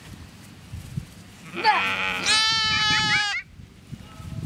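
One loud, high-pitched, drawn-out cry lasting nearly two seconds, starting harsh and then held on a steady pitch with a slight waver.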